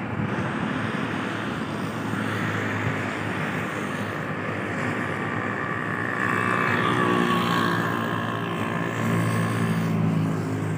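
Steady rumbling running noise of a moving passenger train, heard from on board. A higher whine rises over it about six seconds in and fades a couple of seconds later.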